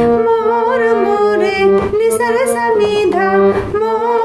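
Harmonium playing a slow melody with steady held reed notes, and a woman singing the tune over it, her voice gliding between notes.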